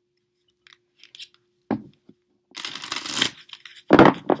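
Tarot cards being handled over a faint steady hum: a single knock, then a rasping shuffle of the cards lasting under a second, and a sharp slap at the very end.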